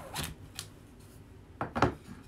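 A rubber squeegee scraping briefly over an ink-covered silk screen mesh, followed near the end by a short, louder clatter as the squeegee and screen frame are handled.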